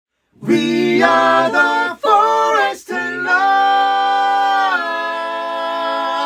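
Unaccompanied voices singing a cappella: two short phrases, then one long held 'aah' that steps down slightly in pitch near the end.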